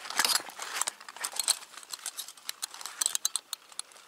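A Bianchi UM84 military holster being handled: its steel wire belt clip clicks and scrapes and the fabric rustles under the fingers, with a denser burst of scraping near the start and scattered clicks after.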